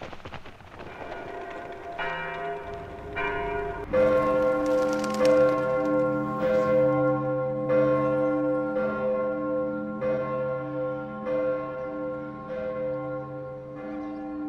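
Church bells ringing: a few lighter strokes at first, then a fuller peal with deeper bells from about four seconds in, struck roughly once a second, each stroke ringing on.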